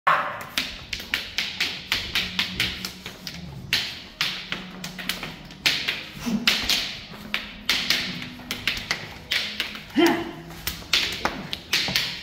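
Arnis sticks clacking against each other in quick, irregular strikes and blocks during a Balintawak stick-fighting drill, two to four knocks a second. A few short shouts come between the strikes.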